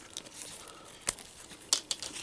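Cloth trench coat of a 6-inch action figure rustling and crinkling as it is pulled off the figure by hand, with two sharp clicks, one about a second in and a louder one near the end.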